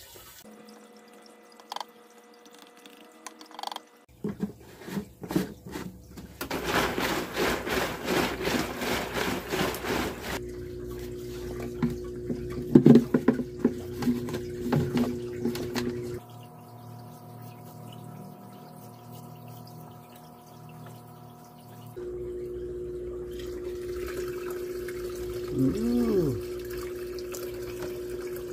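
Water trickling from a reservoir barrel's spigot into a plastic jug, over a steady hum. Partway through comes a few seconds of louder rushing water, and there are clicks and knocks from the jug and its tubing being handled.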